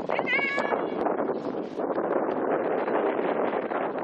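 A short, high-pitched shout from a player on the pitch, dipping then rising in pitch, just after the start. Steady rushing outdoor background noise follows.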